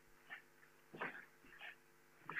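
Near silence in a lecture room: a faint steady hum with a few soft, short sounds.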